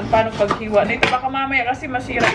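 Knife strokes chopping on a cutting board, several sharp knocks, with a woman's voice over them.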